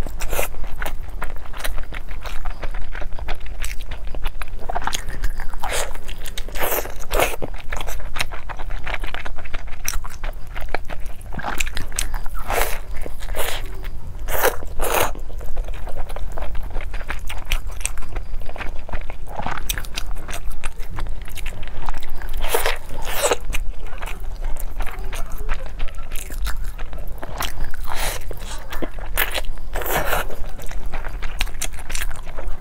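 Close-miked biting and chewing of a block of fatty braised pork belly on glutinous rice. Crunchy bites come at irregular intervals, between stretches of chewing.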